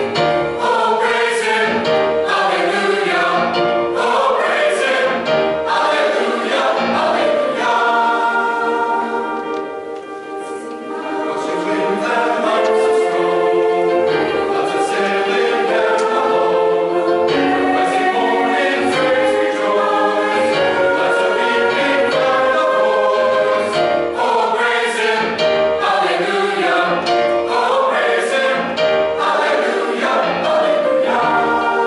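Mixed-voice choir of men and women singing a sacred piece in parts, with a softer, held passage about ten seconds in before the full sound returns.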